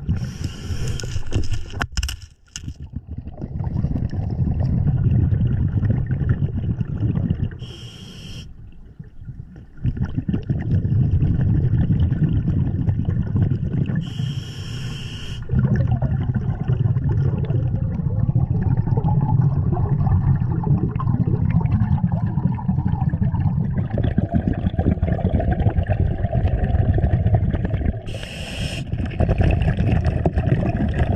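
Underwater sound of a scuba diver breathing through a regulator. A short hiss of inhaled air comes four times, roughly every six to eight seconds, and exhaled bubbles burble low between the breaths.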